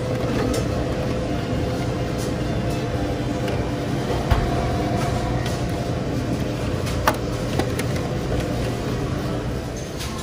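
Steady mechanical hum and rumble with faint steady tones, broken by a couple of short light clicks about four and seven seconds in.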